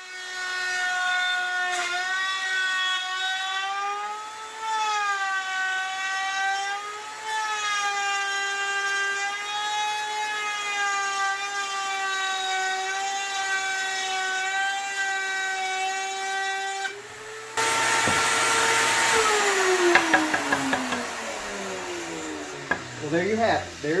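Benchtop router table motor whining at high speed as a quarter-inch straight bit cuts a groove along a board, the pitch wavering slightly as the bit loads and unloads. About three quarters through it turns louder and noisier, then the whine falls steadily as the router is switched off and spins down.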